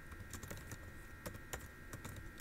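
Computer keyboard keys tapped in a faint, irregular run of clicks as an equation is typed.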